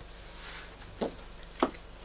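Trading cards slid across a cloth playmat with a soft swish as a hand gathers them up, then two sharp taps, the second louder, as the cards are picked up and knocked together.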